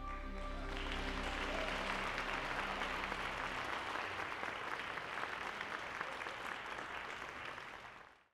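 The accompaniment's last held chord, which about a second in gives way to an audience applauding.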